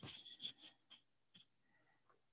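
Near silence: room tone, with a few faint brief clicks and rustles in the first second and a half.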